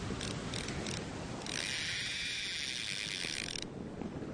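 Fishing reel sound effect: a few separate ratchet clicks, then a fast, continuous ratchet run lasting about two seconds that stops suddenly.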